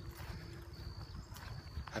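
Quiet outdoor ambience: a low, uneven rumble of wind on the microphone, with a faint thin high whine held for about a second in the middle. A man's voice begins right at the end.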